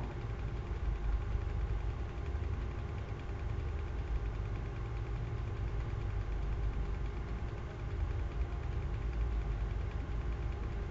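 Steady low hum with faint steady tones above it, the background noise of the recording setup.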